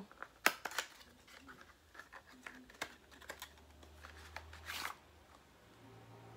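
Small cardboard product box being handled and opened by hand: a few sharp taps and clicks, the loudest about half a second in, and a short papery rustle near the fifth second.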